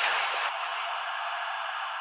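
A band of hiss-like white noise, the closing sound effect of a trap track, with no bass under it. It holds steady, then begins to fade out near the end.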